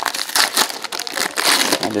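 Foil wrapper of a baseball card pack crinkling in the hands as it is pulled open, a dense run of irregular crackles.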